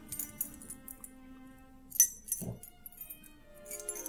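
Soft background music of held, sustained tones, with a bunch of keys jingling and clinking as they change hands; one sharp clink comes about halfway through.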